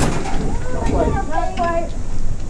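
Indistinct voices talking, over a steady low rumble.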